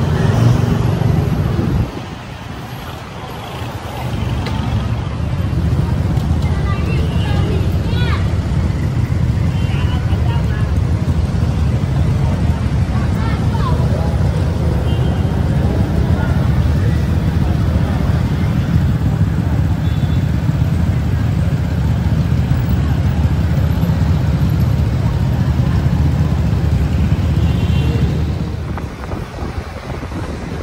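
Steady low rumble of wind buffeting the microphone and road traffic while riding through city traffic, easing briefly about two seconds in and again near the end.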